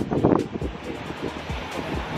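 Background music with a steady beat, with wind buffeting the microphone.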